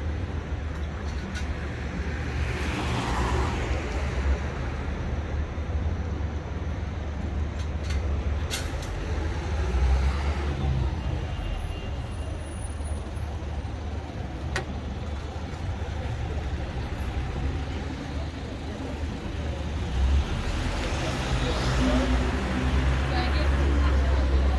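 Road traffic: vehicles passing on the street, with one swell of tyre and engine noise about three seconds in and another near the end, over a steady low rumble.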